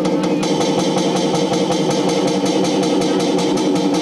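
Programmed electronic music played live: a fast, busy drum-machine beat over a steady droning synth.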